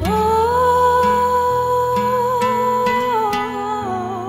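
Slow Christian worship song music: one long held melody note over soft accompaniment, stepping down slightly in pitch about three seconds in and wavering near the end.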